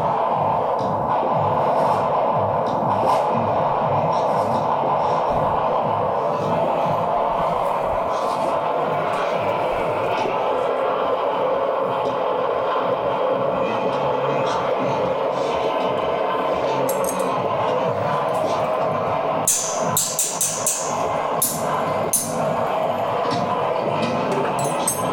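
Experimental electronic noise from a delay-and-feedback loop rig: a dense, droning mass of feedback centred in the mid-range with a low throb underneath. A run of sharp, high clicks cuts in a few seconds before the end.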